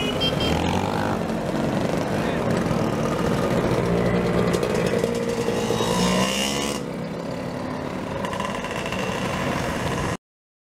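A stream of motor scooters riding past at low speed, their engines buzzing, with the pitch rising and falling as they go by.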